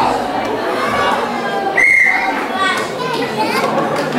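Children and audience chattering, with one short, shrill whistle blast about two seconds in.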